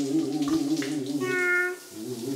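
Water running and splashing in a toilet bowl as a cartoon cat drinks from it. A short held cat vocal sound comes a little past halfway, and the sound drops away just before the end.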